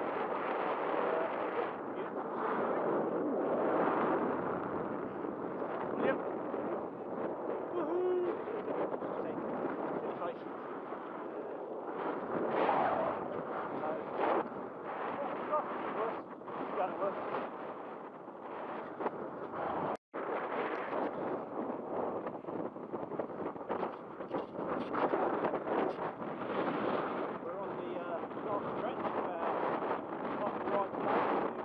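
Wind buffeting the microphone of a camera on a moving bicycle: a rushing noise that swells and falls in gusts. It drops out for an instant about two-thirds of the way through.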